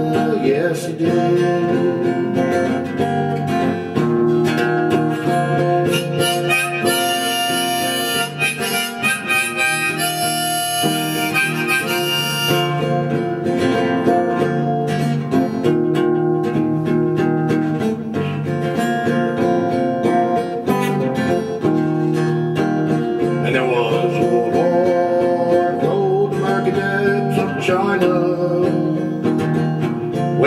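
Acoustic guitar strummed steadily while a harmonica plays sustained melody notes over it, an instrumental break between sung verses.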